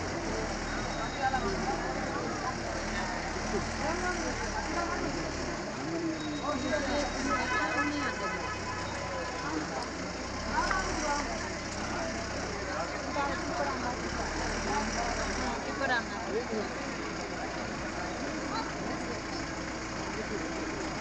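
Hubbub of a large outdoor crowd, many voices talking over one another, with a low vehicle engine idling underneath until about three quarters of the way through. A brief rapidly pulsing tone sounds about seven seconds in.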